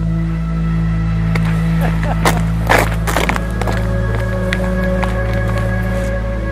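Background music of sustained low droning tones, with a cluster of sharp clicks and short swishes about two to three seconds in.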